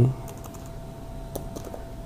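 A few sparse keystrokes on a computer keyboard as a command is typed, mostly in the second half.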